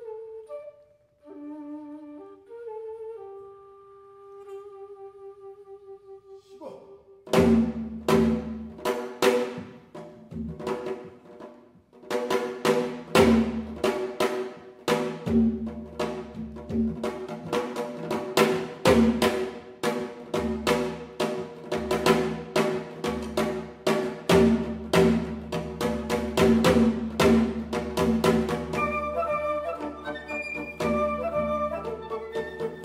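A flute ensemble playing with a Korean janggu hourglass drum. For the first seven seconds or so, wind instruments hold slow, sustained notes. Then the janggu breaks into a fast, steady rhythm under the flutes' held tones and melody.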